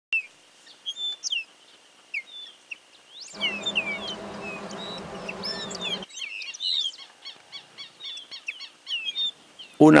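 Several birds calling and chirping: many short, quick whistled and gliding chirps, with a fast repeated ticking trill in the last few seconds. A steady low hum with a hiss comes in suddenly about a third of the way in and cuts off suddenly a little past halfway.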